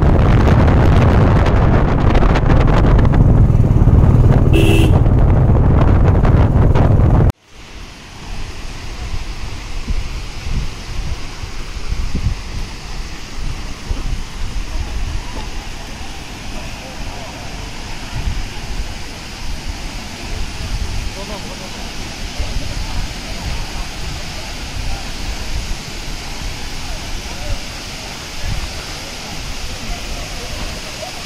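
Wind and road noise from a moving vehicle, loud and low-pitched, that cuts off abruptly about seven seconds in. It gives way to the steady rush of a waterfall falling into a pool, with faint voices.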